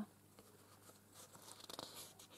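Faint rustling of sheets of thick scrapbook paper being handled and slid over one another, with a few light crackles near the end.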